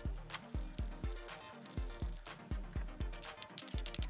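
Background music with a steady beat, with a quick run of light high clicks near the end.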